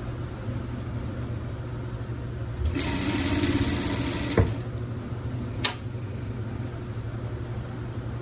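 Industrial straight-stitch sewing machine: a steady low hum, then a short burst of fast, even stitching about three seconds in that stops with a knock, followed a second later by a single sharp click.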